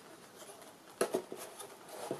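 Small wooden clicks and knocks as a laser-cut wooden model-aircraft nacelle structure is handled and pushed into the slots of a wing centre section for a dry fit, a short cluster of taps starting about a second in.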